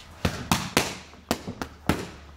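Boxing gloves punching leather focus mitts: about six sharp smacks in two quick runs of three.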